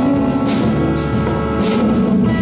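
Live pop band playing a song: drum kit, bass, guitar and keyboard, with cymbal hits about twice a second over sustained chords.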